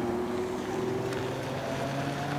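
Steady engine and road hum inside a moving car's cabin, with a low drone that holds its pitch.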